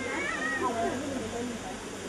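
A man's voice into a handheld microphone, soft and wavering in pitch, quieter than the speech around it.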